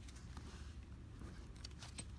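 Quiet room hum with a few faint soft taps and clicks near the end as bare feet touch a Rubik's cube standing on a timer mat.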